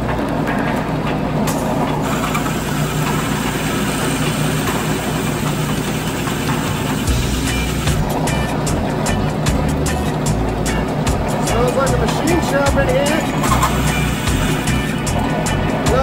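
A Harbor Freight drill press drives a bi-metal hole saw through a sheet-metal plate. The motor runs steadily under the scraping of the cut, which goes smoothly and leaves a clean hole.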